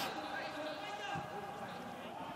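Faint voices from the touchline, heard over a low steady background of stadium noise with no crowd.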